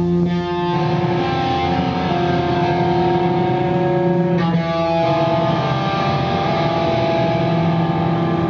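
Live band playing, electric guitars holding long sustained chords that change about half a second in and again around four and a half seconds.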